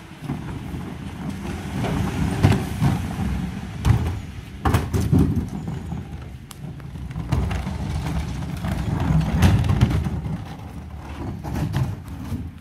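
A 2021 Mercedes Econic refuse truck with a Geesink Norba MF300 body running in the street as it pulls ahead, a steady low rumble. Plastic wheelie bins rattle and knock over it as they are wheeled along the tarmac, with several sharp knocks.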